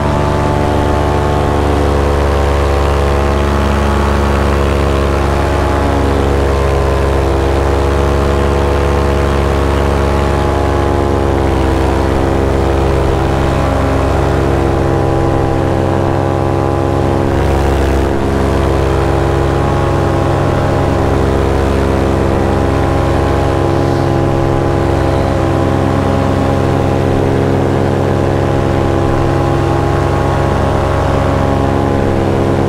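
Paramotor's two-stroke engine and propeller running steadily in flight, heard close up from the pilot's harness; the pitch eases down a little about eleven seconds in and then holds.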